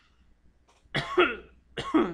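A man coughing twice, once about a second in and again near the end.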